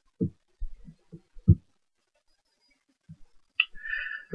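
A few irregular dull low thumps in the first second and a half, the loudest about a second and a half in, then a brief higher hiss near the end.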